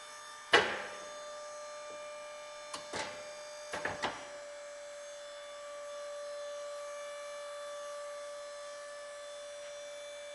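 Comil carcass press: a sharp metallic knock, then a few lighter knocks, followed from about four seconds in by a steady electric hum as the machine runs.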